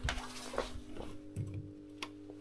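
Clamp meter being handled and moved between battery cables: a few sharp clicks and knocks as the jaws are opened and closed around a cable. Underneath, a steady electrical hum from the running inverter and battery system.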